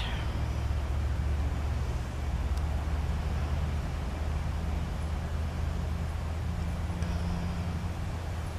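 Steady low rumble of outdoor background noise, with a faint even hiss above it and no speech.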